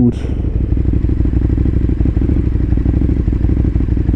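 KTM motorcycle engine running at low, steady revs, a dense low pulsing that neither rises nor falls.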